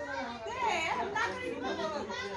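Voices of several people talking over one another, some of them high-pitched.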